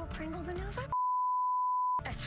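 Speech over background music for about the first second, then the audio cuts out and a single steady high-pitched beep tone, a censor bleep, holds for the rest.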